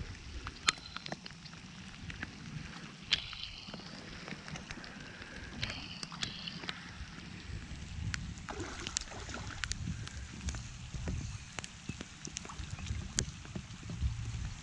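A hooked catfish splashing and thrashing at the surface close to the bank, over a steady low rumble of wind on the microphone, with scattered sharp clicks.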